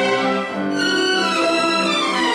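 A string ensemble of violins and a cello playing a classical piece with sustained bowed notes that change pitch as the melody moves.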